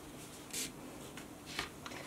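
Soft rustle of 550 paracord sliding through fingers and across the weaving jig, two brief swishes about half a second and a second and a half in, over faint room hiss.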